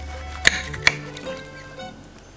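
Two sharp clicks of a metal utensil against a glass salad bowl, about half a second and a second in, as the salad is mixed, over steady background music.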